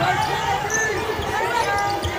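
Basketball being dribbled on a hardwood court, with short high sneaker squeaks and voices around it.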